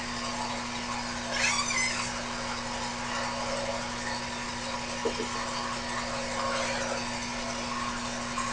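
Mini bench lathe's small electric motor running with a steady hum, with a brief light rustle about one and a half seconds in.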